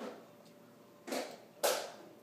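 A child slurping spaghetti noodles: three short sucking slurps, one at the start and two close together in the second half.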